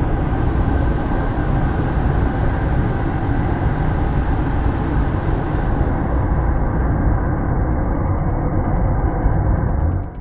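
Homemade waste oil burner firing with a loud, steady roar, mostly deep rumble, with a hiss that rises over the first half and then fades. The roar drops off sharply at the very end.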